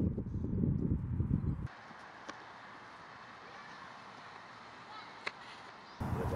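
Wind rumbling on the microphone, cut off abruptly after a second and a half; then quiet outdoor ambience with two short sharp clicks about three seconds apart.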